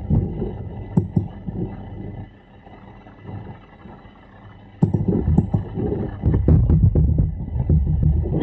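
Low, crackling rumble of noise on a video-call audio line, without speech. It falls away a little over two seconds in and comes back louder near five seconds.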